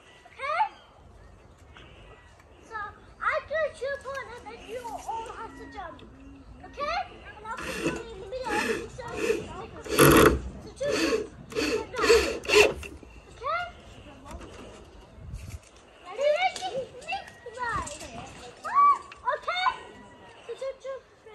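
Young children playing and calling out, their high voices coming and going throughout, with a quick run of loud, sharp sounds about halfway through.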